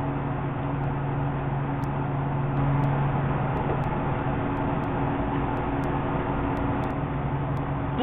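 Steady low hum with an even hiss of background noise, with no singing.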